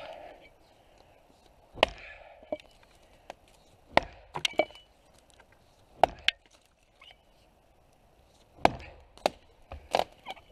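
Double-bit cruiser axe chopping into the trunk of a dead arbutus (madrone), whose wood is very hard. Sharp chops land about every two seconds, some followed quickly by a lighter second knock.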